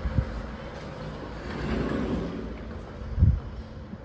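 Automatic sliding glass doors opening as someone walks through with a handheld camera: a low rumble that swells about two seconds in. There are two dull thumps, a small one at the start and a louder one about three seconds in.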